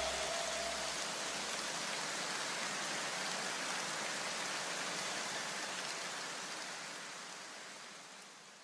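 A steady, even hiss like rain, with the last tones of a piece of music dying away in the first second. The hiss fades out near the end.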